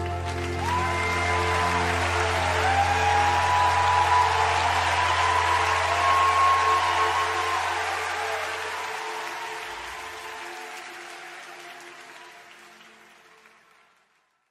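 End of a live worship song: a sustained low chord held under audience applause, the whole fading out steadily over the last several seconds.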